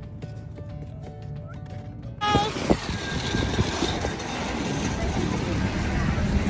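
Low rumble of a car moving at low speed, heard from inside the cabin, with faint music. About two seconds in it cuts abruptly to much louder outdoor noise: a dense hiss with indistinct clatter.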